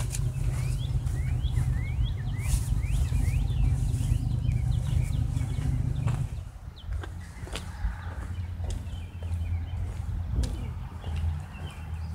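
Birds chirping in quick repeated upward-sweeping notes, over a low rumble that drops away about six seconds in; the chirping carries on more faintly after that.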